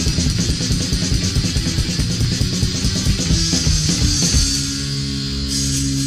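Fast punk rock from a studio recording: distorted electric guitar, bass and drums playing together. A little past four seconds in, the drums stop and the band holds one ringing chord.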